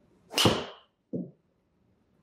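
A Cobra King RAD Speed driver striking a golf ball off the tee: a sharp, loud crack with a brief metallic ring. About three-quarters of a second later comes a short dull thud as the ball hits the simulator's impact screen.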